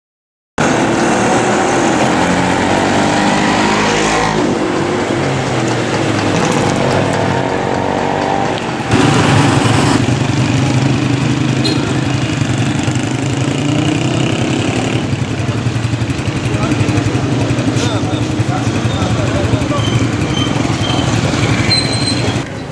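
Road traffic with engines running, mixed with people's voices; it steps up in loudness about nine seconds in.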